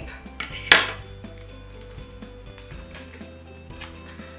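A short sharp rip about a second in, a strip of sticky tape being torn off for taping paper together, followed by a few light handling clicks, over soft background music.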